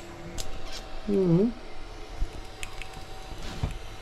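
TIG welding arc on a steel electric-motor housing: a steady thin hum over a hiss, with scattered small crackles.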